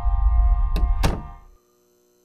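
Low, droning film score broken by two sharp thuds about a third of a second apart, after which all sound cuts off abruptly, leaving only a faint hum.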